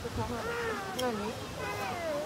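Indistinct chatter of people's voices, fairly high-pitched, with no words clear enough to make out.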